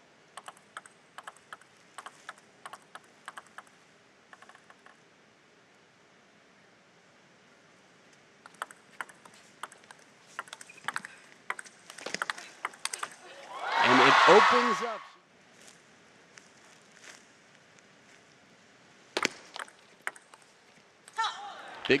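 Table tennis ball ticking in a quick run of bounces before the serve, then a rally of sharp clicks of ball on bats and table. The rally ends with a player's loud shout that falls in pitch, the loudest sound here, and a few more ball bounces follow.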